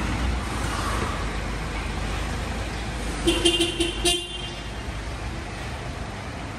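Pickup truck engine running, then one short horn toot about three seconds in as the new truck pulls away; the engine rumble eases off after the toot.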